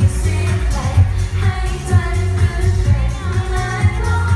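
A woman singing a Thai pop song live into a handheld microphone over pop accompaniment with a steady bass-drum beat, amplified through a stage PA.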